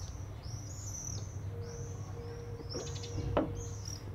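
Small songbirds chirping again and again, short high downward-sliding notes, over a steady low background rumble. A single light knock sounds about three and a half seconds in.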